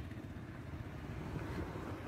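Faint, steady low rumble of a vehicle engine and road noise.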